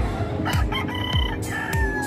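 A rooster crows once, starting about half a second in; the call holds steady and drops in pitch at the end. Background music with a steady beat about twice a second plays underneath.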